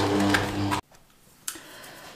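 Electric stand mixer kneading dough with its dough hook: a steady motor hum with a faint tick about twice a second, stopping abruptly under a second in. A single sharp click follows about a second and a half in.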